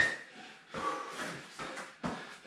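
Hard breathing and exertion sounds from people doing kneeling squats, louder at the very start and softer about a second in.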